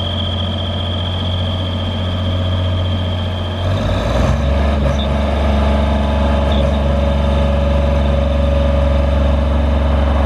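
The water-cooled Deutz diesel engine of a JLG 460SJ boom lift running steadily, with a high thin whine over it. About four seconds in, the whine stops and the engine settles into a deeper, slightly louder note.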